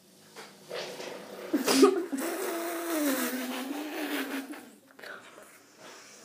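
A long fake fart noise blown through the lips into cupped hands, lasting about three seconds: it starts with a sharp blast and then buzzes on, sagging slightly in pitch before it dies away.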